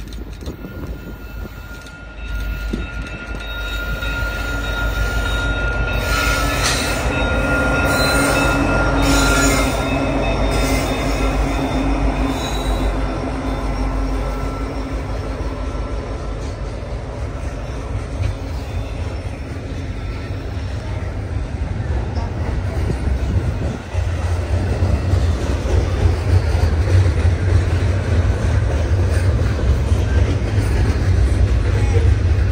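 CN double-stack intermodal freight train approaching and passing, led by an SD75I and an ET44AC. The locomotives grow louder as they come by, and the stack cars then rumble and clatter past, their rumble building heavier near the end.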